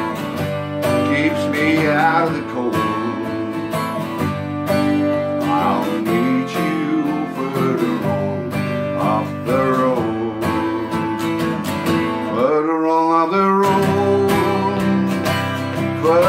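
Twelve-string acoustic guitar strummed in chords, with a man singing over it.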